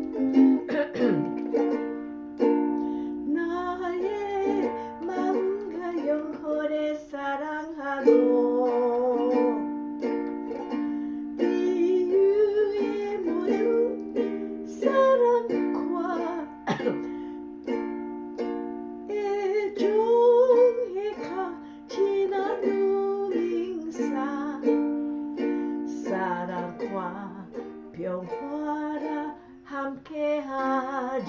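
A ukulele strummed in slow chords, accompanying a voice singing a song in Korean.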